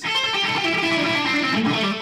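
Electric guitar playing a continuous run of single notes, a scale sequence, that starts and stops abruptly.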